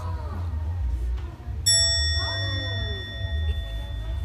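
A single bright ding about one and a half seconds in, ringing on for about two seconds before fading, over faint background voices and a steady low hum.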